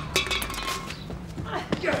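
Scuffle: a few sharp knocks and footfalls as a man struggles free and scrambles up a brick wall, with a voice coming in near the end.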